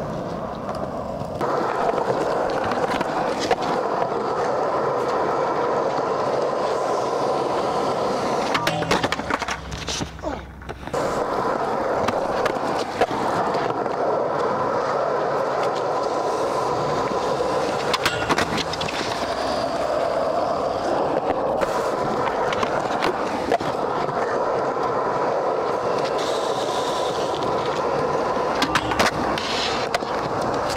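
Skateboard on 55 mm Tired wheels with Cortina bearings, rolling over concrete with a steady wheel roar. Sharp clacks of the board hitting the ground come about nine seconds in, again around eighteen seconds and near the end, and the roar drops off briefly about ten seconds in.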